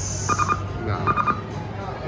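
Eureka Blast video slot machine sounding short electronic beeping chimes in two quick clusters as the spin ends, over the steady hum and din of a casino floor.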